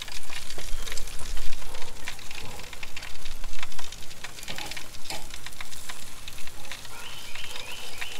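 Chicken wings sizzling on the grate of a charcoal kettle grill as they are turned with metal tongs. A steady hiss of cooking runs under many sharp pops and clicks from fat dripping onto the hot coals and the tongs on the grate.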